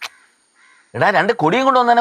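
A man's voice speaking, starting about a second in after a brief near-silent gap.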